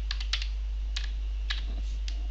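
Computer keyboard typing: a handful of irregular key clicks as a short word is typed, over a steady low hum.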